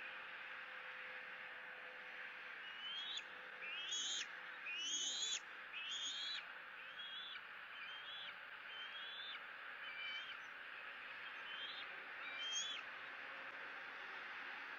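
Bald eagle calling: a series of about ten short, high, rising whistled notes about a second apart, loudest in the first few, over a steady background hiss.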